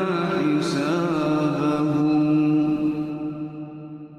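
Quran recitation: a man's chanting voice drawing out the last syllables of a verse in one long melodic note. The pitch wavers for the first second or so, then holds steady, and the voice fades away near the end.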